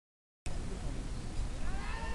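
The sound cuts out completely for the first half second, then returns as steady noise with a low rumble. Near the end comes one short call that rises and falls in pitch.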